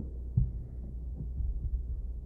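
Steady low electrical hum of the press-conference recording, with one short low thump about half a second in.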